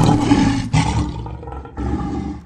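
A lion roar sound effect, loud at first and dying away in a few pulses.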